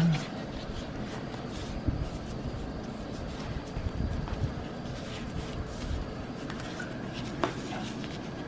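Banana leaf being folded and pressed around a cake by hands in plastic gloves: soft, irregular rustling and crinkling.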